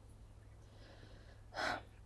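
A woman's short, sharp breath in through the mouth about one and a half seconds in, after a quiet pause, over a faint steady low hum.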